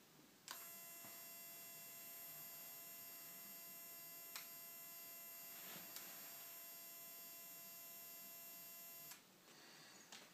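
HID xenon ballasts driving a pair of lamps: a click about half a second in as the lamps are reignited, then a faint, steady, high electronic whine of many tones, with a couple of small ticks midway, cutting off suddenly near the end when the lamps are switched off.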